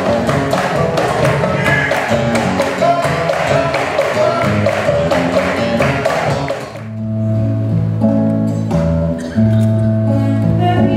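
Live acoustic ensemble music: nylon-string guitar with dense, quick hand percussion on a cajón. About seven seconds in it changes abruptly to guitar alone playing held notes and chords.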